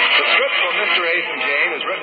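An announcer's voice on an old radio broadcast recording, with no treble, coming in about a third of a second in as the closing theme music fades under it.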